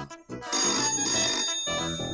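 Desk telephone bell ringing, one ring of about a second that starts about half a second in.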